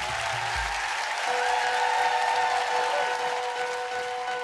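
Studio audience applauding. A steady held musical chord comes in about a second in.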